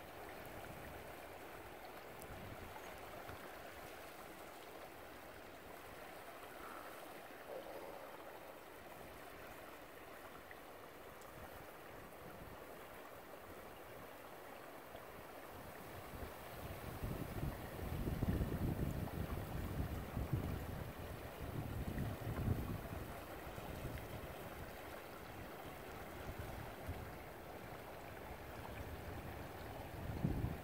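Steady rush of a river's current flowing past. From a little past halfway, for about seven seconds, low irregular rumbles of wind buffet the microphone, louder than the water.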